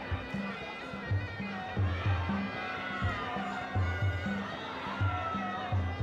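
Sarama, the traditional music that accompanies Muay Thai bouts: a reedy Thai oboe (pi java) plays a wavering melody over a steady, repeating drum beat.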